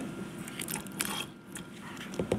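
Faint, scattered small clicks and light crackling as a conductivity probe is swished in a plastic beaker of rinse water.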